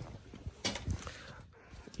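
Quiet handling noise from power banks being picked up and moved on a fabric surface: a few light knocks and rustles, the sharpest about two-thirds of a second in.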